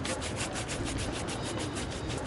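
A brush rubbed rapidly back and forth over a surface in fast, even strokes, about ten a second.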